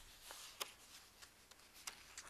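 Faint, sparse rustles and clicks of paper sheets being handled on a table.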